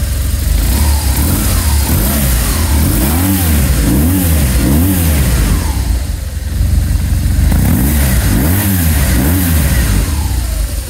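Air-cooled BMW GS Adventure boxer-twin engine idling, blipped repeatedly: a quick run of about four revs rising and falling a few seconds in, then about three more near the end.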